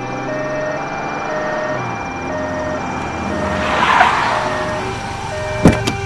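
Film soundtrack: a vehicle engine's low steady hum under a line of held music notes, with a rising whoosh about four seconds in and a single sharp hit near the end.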